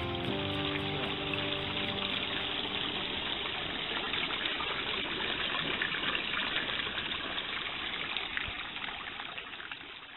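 Mineral spring water pouring from a stone outlet and running along a shallow stone channel: a steady rushing trickle that grows fainter near the end.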